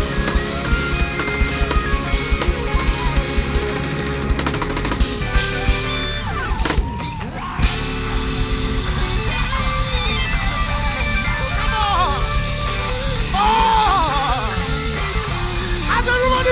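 Live rock band playing: drum kit with busy hits on drums and cymbals, with electric guitar and bass guitar. About six seconds in the drumming breaks off briefly under a sliding pitch. After that the music goes on with sparser drum hits and bending guitar notes.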